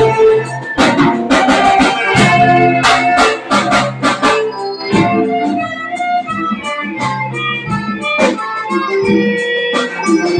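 A youth ensemble of plastic recorders, saxophones and a violin playing a tune together, over a beat of regular percussive hits.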